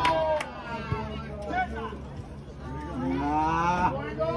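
Spectators' voices by the pitch. A short laugh at the start, then scattered calls, and near the end one long drawn-out shout that rises slightly in pitch.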